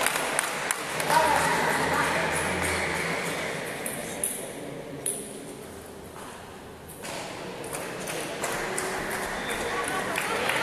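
Table tennis balls clicking off bats and tables in rallies, many sharp ticks in quick succession, over voices in a large sports hall. The clicking thins out for a few seconds in the middle.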